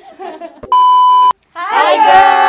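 A steady electronic bleep tone of about half a second, edited in over laughing chatter and cutting off abruptly. Near the end, several voices break out loudly together.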